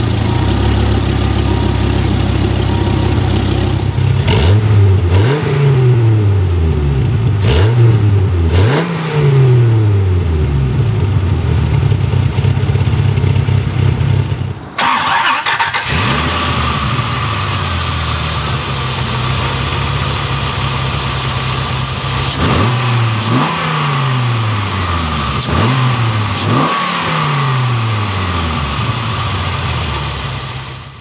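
1993 Dodge Viper RT/10's 8.0-litre V10 idling and revved in a series of quick throttle blips, each falling back to idle. The first half is heard at the side-exit exhaust. After a brief break about halfway, it is heard from the open engine bay with more blips.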